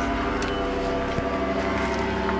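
Powered paraglider (paramotor) engine running with a steady, unchanging drone.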